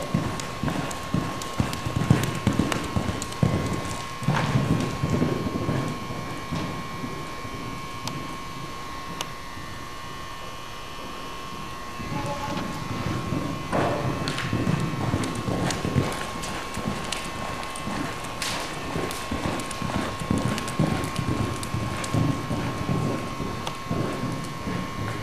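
Welsh pony's hoofbeats cantering on soft indoor arena footing: irregular dull thuds that fade for a few seconds near the middle and pick up again. A steady faint high whine runs underneath.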